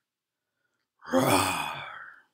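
A person imitating a lion's angry roar with a single loud, breathy, growling vocal sound that starts about a second in and trails off.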